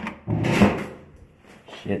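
A door latch clicks and the door is pulled open, with a louder knock and rattle about half a second later.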